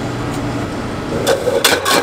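Kitchenware being handled and slid on a metal wire shelf, a rubbing, scraping noise with a few sharp clatters near the end, over a steady hum.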